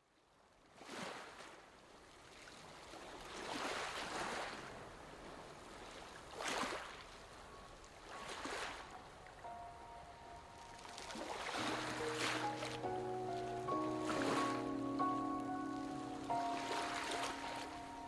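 Ocean waves washing in, a swell every two seconds or so, starting about a second in. About two-thirds of the way through, soft sustained music notes come in over the waves.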